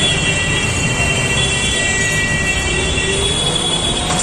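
Loud, steady din of road traffic passing close by, motorcycles and cars, with no single event standing out.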